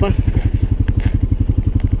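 ATV engine idling with an even, low putter.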